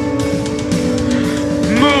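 Metal band playing live: distorted electric guitars holding a steady chord over drum hits, with a shouted vocal coming in near the end.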